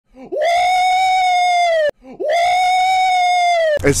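A man's voice giving two long, high-pitched yells, each held steady for about a second and a half, with a short break between them.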